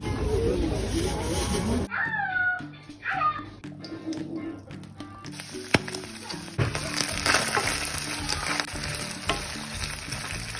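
Diced onion frying in oil in a pan, a steady sizzle from about five seconds in, over background music. Earlier there is a noisy stretch and two short falling calls.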